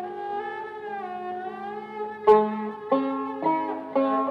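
Turkish classical instrumental music on tanbur: a sustained melody line that slides smoothly in pitch, then sharply plucked notes, the first and loudest about two seconds in, followed by three more at roughly half-second spacing.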